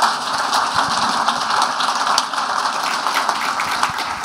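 Audience applauding steadily: many hands clapping at once.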